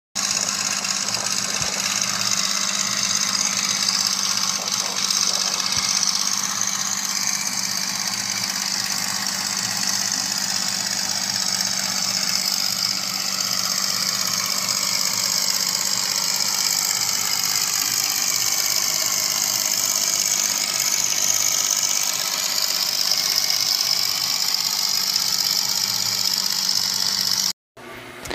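An engine running steadily, then cutting off suddenly near the end.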